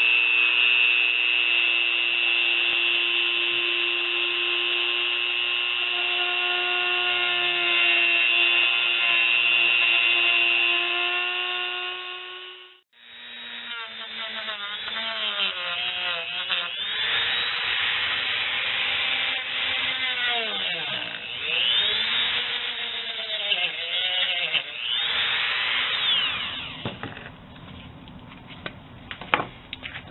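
Dremel rotary tool with a cutoff wheel cutting through flattened PVC sheet. A steady high whine runs for about twelve seconds and stops abruptly, then the tool runs again with its pitch repeatedly sagging and recovering, fading away near the end with a few clicks.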